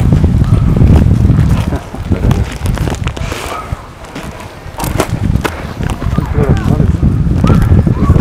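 Footsteps of people walking on a dirt trail, with a heavy low rumble on the handheld camera's microphone. The rumble is strongest in the first two seconds and again from about five seconds in, and a scatter of sharp crunches and clicks fills the quieter middle.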